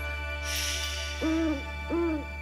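Two short owl hoots, a cartoon sound effect about 0.7 s apart, each rising, holding, then falling in pitch. They come after a brief high sparkling shimmer, over a low steady hum.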